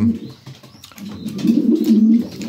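A pigeon cooing in the loft, a low rolling coo that starts about a second in.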